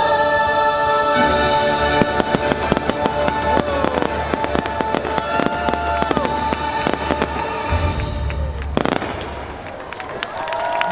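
Fireworks popping and crackling in quick succession over orchestral show music that holds one long chord. A single louder bang comes near the end.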